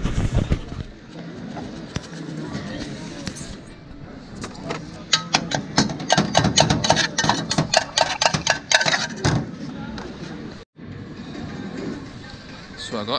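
A metal spoon clinking and scraping rapidly against a small steel cup, a quick run of sharp clinks from about five seconds in to about nine seconds in, as corn is spooned and stirred for serving.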